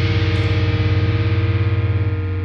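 Heavily distorted electric guitar, with bass beneath, holding one sustained chord in a groove metal recording, the chord ringing out as the song closes.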